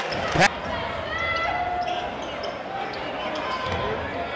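A basketball bouncing once on the hardwood court about half a second in, a sharp bang that is the loudest sound, followed by the hum of the gym crowd with scattered voices.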